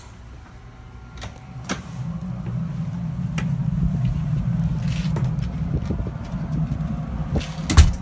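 A low rumble starts up about two seconds in as the way opens from the wheelhouse onto the open deck of a ship, and it holds steady. A few knocks and clicks of the steel door and footsteps come over it, and a sharp knock near the end is the loudest sound.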